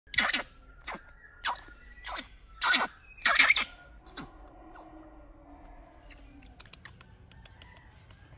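A baby macaque giving a run of six or seven short, shrill squealing cries while being dressed, the loudest about three and a half seconds in. The cries stop after about four seconds, leaving faint clicks of handling.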